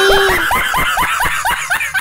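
High-pitched laughter, a quick even run of short 'ha' sounds at about seven a second, as a held music note fades out about half a second in.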